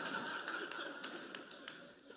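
An audience laughing, the laughter fading away, with a few faint sharp taps.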